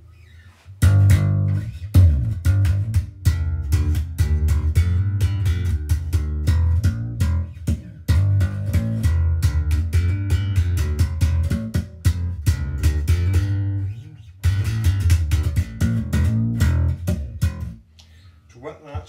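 Cort Curbow 4 four-string electric bass played through an amplifier, a busy run of plucked notes starting about a second in, with a short break about three-quarters of the way through. The bass is in active mode with its switch down, bypassing the onboard EQ and going through the internal slap/depth and gain preset.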